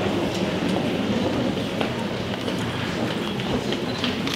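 Murmur of a seated crowd and a large group of children: a steady, indistinct hubbub with a few faint clicks, with no singing.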